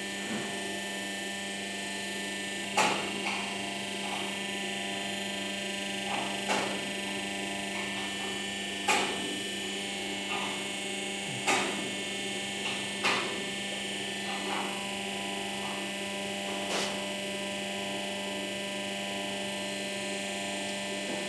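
Steady electrical hum from an areca-leaf spoon press machine, with light clicks and knocks scattered irregularly through it as the pressed spoons are handled.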